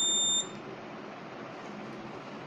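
Buzzer on the monitoring kit giving one steady, high-pitched beep that cuts off about half a second in, followed by faint steady hiss.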